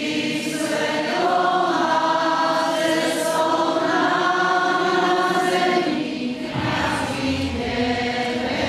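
Choir and congregation singing a slow liturgical hymn at Mass, with long-held notes. A deep low rumble joins in about six and a half seconds in.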